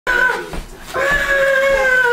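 A baby vocalizing: a short high squeal, then a longer drawn-out squealing coo starting about a second in that dips in pitch at the end.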